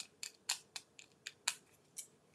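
Faint, short plastic clicks as a small round clear plastic container of loose embellishment dots is handled and its snap-on lid is pulled off, about eight light ticks spread across two seconds.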